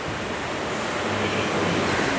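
A steady, even rushing noise with no words, like hiss or room noise through the microphones and sound system.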